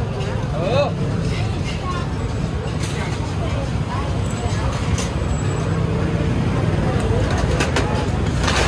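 Steady street traffic rumble, with background voices of people nearby and a few faint clicks.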